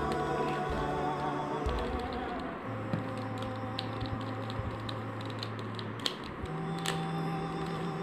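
Irregular clicks of a gold mirror cube's layers being turned by hand, over background music of slow, long-held notes.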